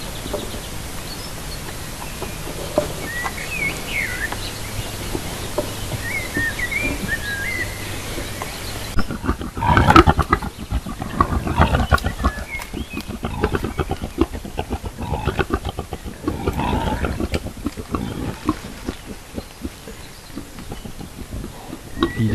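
Wild boar grunting and snuffling close to the trail camera, in loud, rough bouts starting about nine seconds in. Before that, a few faint bird chirps.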